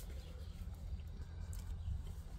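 Quiet outdoor background with a steady low rumble and no distinct sound events.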